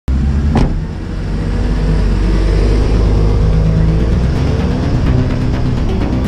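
A car engine running and revving, mixed with intro music, with a sharp hit about half a second in.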